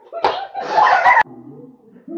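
A sharp smack of a body against hands or the floor, followed by a short, loud burst of a girl's laughter that cuts off suddenly.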